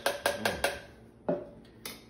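Metal spoon knocking against a plastic shaker cup, a quick run of about five sharp taps followed by two more single knocks, shaking thick pumpkin puree off the spoon into the cup.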